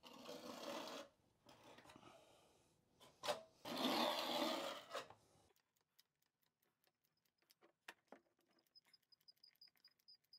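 Rubbing and scraping noises as a caulking gun lays sealant along a tub flange, loudest about three to five seconds in. After that come scattered faint clicks and, near the end, a quick run of faint high ticks.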